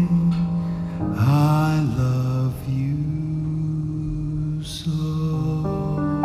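Live slow ballad: a male voice holds long, drawn-out final notes with a brief slide in pitch about a second in, over soft accompaniment, and piano notes come in near the end.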